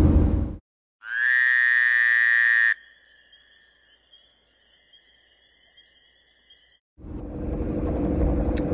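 Electronic tone inserted over dead silence: a loud, steady buzzy note lasting under two seconds, then a fainter high two-note hum held for about four seconds before it cuts off.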